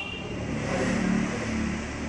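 A motor vehicle running: steady engine and road noise that swells a little about a second in.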